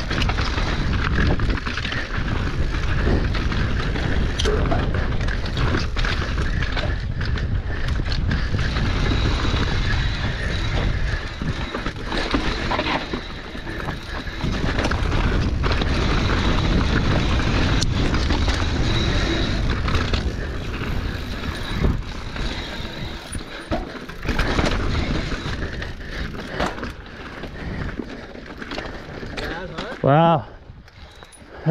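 Mountain bike riding down a rocky dirt trail: heavy wind rush on the microphone with tyre rumble over rocks and frequent sharp knocks and rattles from the bike.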